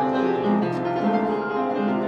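Kawai upright piano being played: a classical piece with several lines of notes sounding together, the notes held and overlapping.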